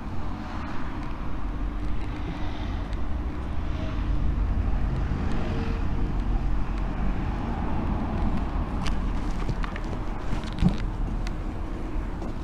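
Street traffic: a steady low rumble of road vehicles passing, with a few light knocks about nine to eleven seconds in.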